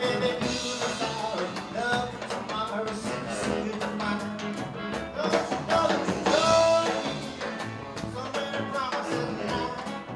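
A live blues band plays with a saxophone carrying the melody over upright bass, drum kit and electric guitar.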